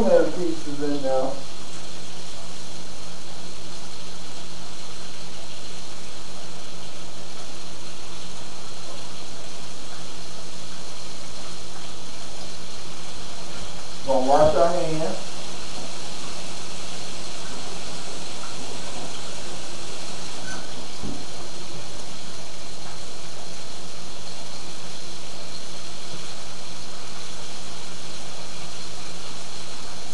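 Battered whiting fish frying: a steady, even sizzle.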